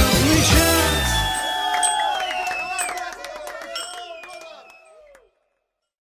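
Live Latin-style band music ending on a final chord about a second in, followed by shouts and whoops that fade out to silence about five seconds in.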